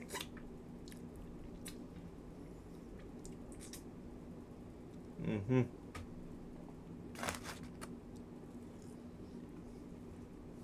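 Someone chewing a mouthful of chicken burger, with scattered small wet mouth clicks over a steady low hum. A single word is spoken about five seconds in, and there is a short breathy puff a little later.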